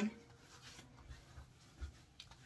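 Faint rubbing of hands over a bearded face, working in pre-shave soap, with a soft low thump near the end.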